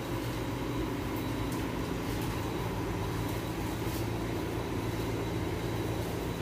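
Steady low hum and drone of a grocery store's background machinery, with a faint thin high tone and a few light clicks.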